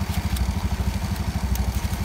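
Small motorcycle engine idling close by, with a steady, rapid, even throb.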